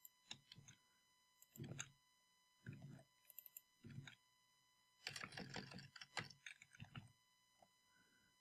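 Faint computer keyboard keystrokes and mouse clicks: a few scattered single clicks, then a quick run of keystrokes about five seconds in.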